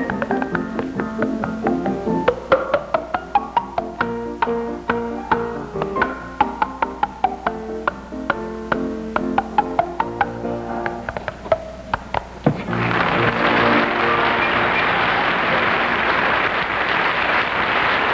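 A tune of pitched notes punctuated by rapid sharp clicks, made by a performer's hands and mouth. It stops abruptly about two-thirds of the way in, and a studio audience breaks into applause.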